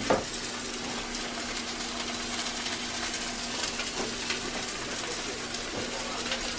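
Food sizzling in a frying pan on the stove, a steady hiss throughout, over a steady low hum. A knock comes just after the start and a few light taps follow later.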